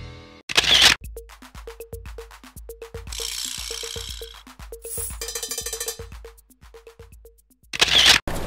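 Sparse electronic music: a steady beat of clicks and low thumps with short repeated notes, opening with a brief loud burst of noise about half a second in and another just at the end.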